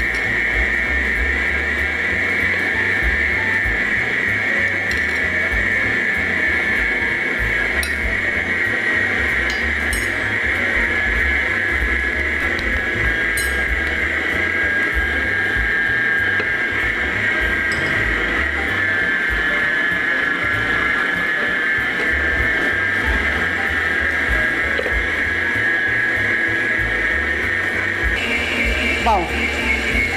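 Arno stand mixer's electric motor running steadily with a high whine as it beats cake batter while ingredients are added. Near the end its pitch jumps briefly and then falls away as it winds down.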